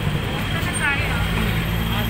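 Busy street ambience: a steady low traffic rumble with voices of passers-by, one briefly audible about a second in.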